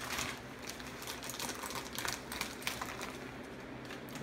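Scissors snipping open a vacuum-sealed plastic bag of frozen links: a run of small irregular clicks and crinkles of plastic.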